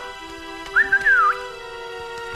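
Soft background music of held notes, with a short wavering whistle that rises and dips about three quarters of a second in.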